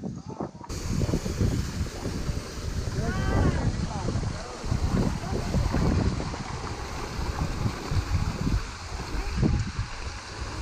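Wind buffeting the camera microphone, a gusty rumble over a steady hiss that starts abruptly about a second in, with a faint voice about three seconds in.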